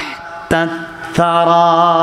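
A man chanting Quranic verses in Arabic in the melodic tilawat style: a short phrase, then a long held note with a slight waver starting just past a second in.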